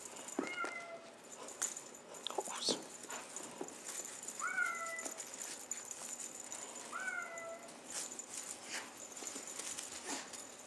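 A kitten mewing three times, short high calls a few seconds apart. Scattered soft thumps and rustles come from kittens pouncing on a feather wand toy on carpet.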